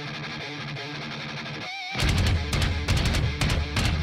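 Heavy rock song with guitar: a quieter guitar passage, then a short break with a wavering note, and about halfway through the full band comes in much louder, with sharp repeated hits.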